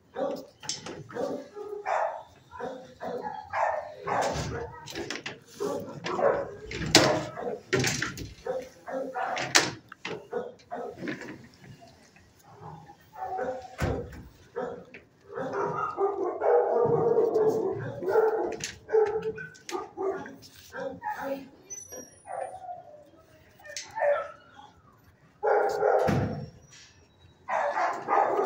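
Dogs barking in animal-shelter kennels, short barks coming thick and fast in the first half, then a longer spell of continuous barking past the middle and more barks near the end.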